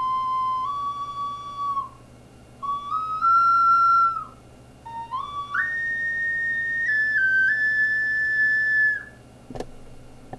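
Focalink plastic soprano C ocarina played in three short phrases of clear, held notes that step between pitches with short breaths between phrases, each phrase higher, the last the longest and highest. A sharp click comes near the end.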